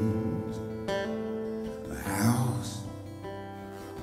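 Live band playing an instrumental passage with no singing, led by a strummed acoustic guitar, its chords changing about once a second. The passage is quieter than the sung verses around it.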